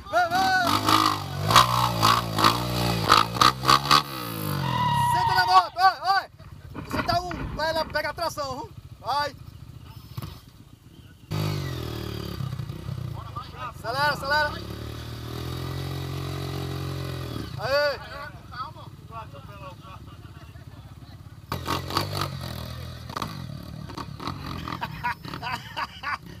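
Dirt bike engine revving in bursts while the bike is bogged down in deep mud. The engine runs during the first few seconds, again for several seconds in the middle, and briefly near the end, with shouting voices between the bursts.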